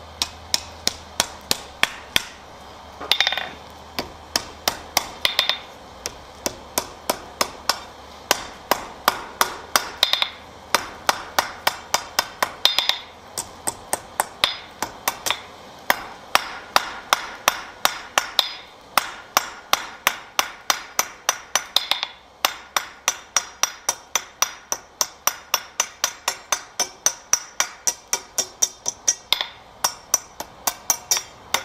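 Blacksmith's hand hammer striking a hot iron rod on the anvil in a steady rhythm, about three blows a second, with a few brief pauses. Each blow gives a sharp, ringing clang of steel on hot iron over the anvil face.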